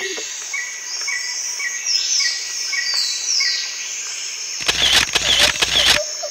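Bird calls: a short chirp repeated about twice a second with falling whistles over it, then a louder, harsher burst of calls near the end.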